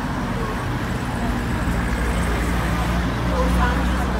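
City street traffic: a vehicle engine running with a steady low hum, with scattered voices from people at pavement café tables.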